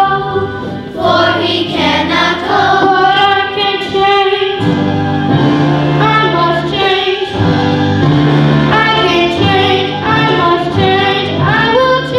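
A child singing a stage solo over a steady instrumental accompaniment, through a stage microphone.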